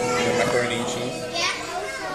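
A young child's voice talking, with faint background music in the first moments.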